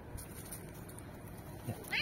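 A cat gives one short meow near the end.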